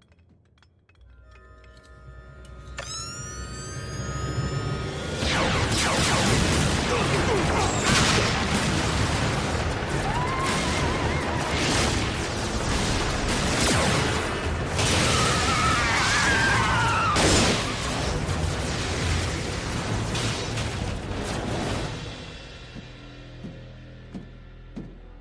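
Animated battle sound effects over music: a rising whine about three seconds in, then a long stretch of repeated explosions and blaster fire that fades near the end.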